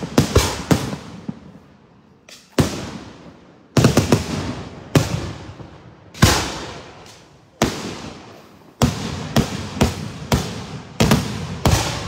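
Daytime aerial fireworks shells bursting overhead: about twenty sharp bangs in irregular clusters, each with a fading, echoing tail and short lulls between groups.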